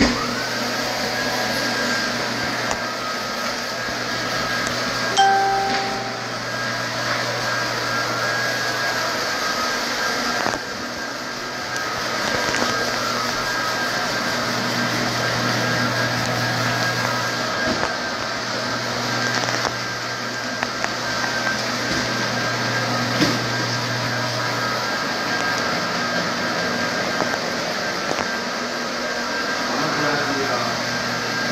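Rotary floor buffer with a tampico brush running steadily over sanded hardwood, its motor whine rising to a steady pitch as it comes up to speed at the start, then holding a steady hum. A short two-note tone sounds about five seconds in.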